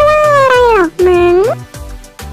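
A woman's voice drawing out two long vocal sounds, the first sliding down in pitch and the second rising at its end, then stopping about a second and a half in. Light background music with a steady beat plays underneath and carries on alone.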